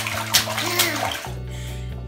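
A toddler slapping bathwater in a bathtub, several quick splashes with a short childish vocal sound among them, dying down after about a second. Background music plays underneath.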